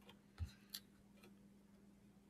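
Near silence: two faint short clicks, a little under half a second in and about three quarters of a second in, over a faint steady low hum.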